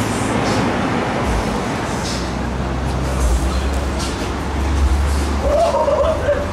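Deep rumble of a car engine running close by over a steady wash of traffic noise; the rumble builds through the middle and eases near the end.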